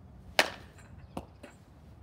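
A bat striking a softball off a batting tee: one sharp, loud crack with a brief ring, followed about a second later by a much fainter click.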